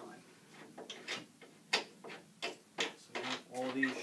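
A string of irregular sharp clicks and knocks as the large rubberized knobs clamping a Dobsonian telescope's truss ring to the mirror box are handled and worked loose.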